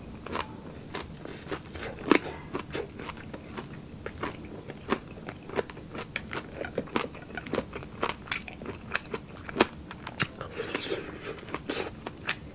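Close-up chewing of crispy fried pork: irregular sharp crunches and wet mouth clicks throughout.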